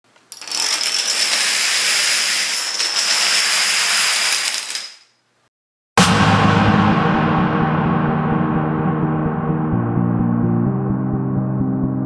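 A dense, continuous clatter of many plastic dominoes toppling in a chain, fading out about five seconds in. After a second of silence, ambient music begins with a struck chord and sustained low tones.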